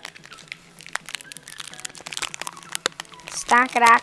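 Foil wrapper of a Pokémon trading-card booster pack crinkling and crackling in a run of small, irregular clicks as it is handled and opened.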